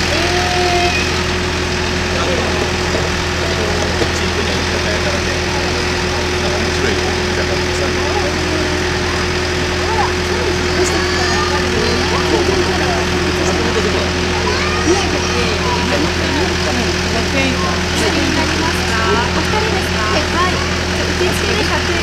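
Diesel-type engine of an aerial work platform truck running steadily at idle, a constant low drone with a steady hum above it, while the boom and basket are raised. People's voices chatter in the background.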